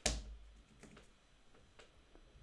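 Light clicks from working a computer: one sharp click right at the start, then two faint clicks about a second apart.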